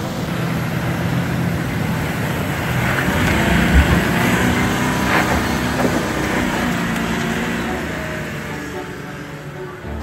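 Toyota LandCruiser 70-series Troop Carrier engine running under load as the truck drives through shallow river water, with water rushing and splashing around the tyres, then climbs out up the bank. A heavy thud comes about four seconds in.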